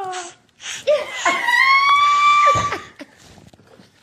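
A person's laughter breaking into a high, held squeal lasting about a second and a half.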